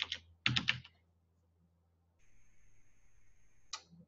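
A few quick computer keyboard keystrokes about half a second in. Later there is a faint steady high whine for about a second and a half, then a single click near the end.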